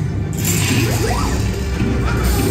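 Ride soundtrack music with sci-fi sound effects: a whoosh and a few quick rising electronic tones about a second in.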